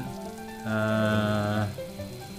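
A voice holding a drawn-out hesitation sound, one flat "ehh" about a second long in the middle, over a faint steady hiss.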